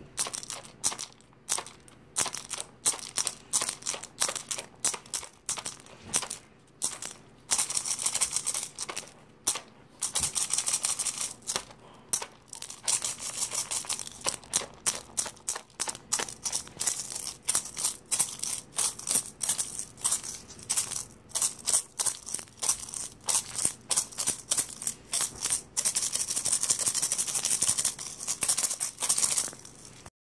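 Handmade musk turtle shell rattle with bobcat claws and shell beads inside, shaken in quick strokes a few times a second, with longer spells of steady shaking. It makes a dry, rustling, clicking rattle of claws against the shell.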